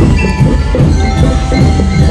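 Drum and lyre band playing: bell lyres ringing out a melody over steady marching drums.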